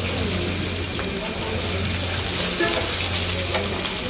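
Hilsa (ilish) fish slices sizzling in shallow oil on a large flat iron pan, with a steady hiss and a low hum underneath. A metal spatula clicks against the pan a few times as the pieces are turned.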